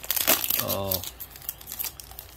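Plastic foil wrapper of a 2021 Bowman Chrome card pack crinkling as it is pulled open, a dense crackle in the first half second that then dies down.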